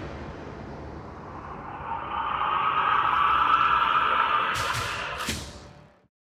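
A sound-design sting closing the credits music: a rushing swell of noise builds from about two seconds in. Two short sharp hits come near the end, and then it fades out to silence.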